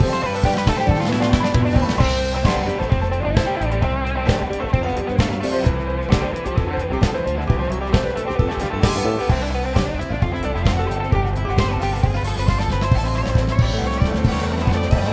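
Live rock band playing an instrumental passage: electric guitar lines over a drum kit keeping a steady beat of about two hits a second, with bass underneath.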